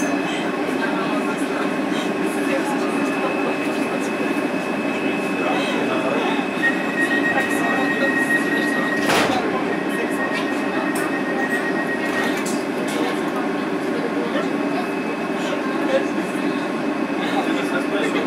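DLR B2007 Stock train heard from inside while running: a steady rumble of wheels and traction equipment with a thin, steady high tone over it. A second, higher whistle joins for about six seconds in the middle, and a single sharp click comes just past halfway.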